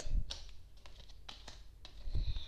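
Cards being handled and laid onto a wooden tabletop: a few light, scattered clicks and taps, about five in two seconds.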